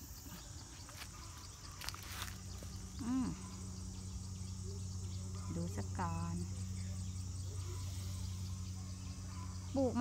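Insects chirring steadily in a garden, a high continuous drone, over a low steady hum that grows louder a few seconds in. A few light clicks come in the first two seconds.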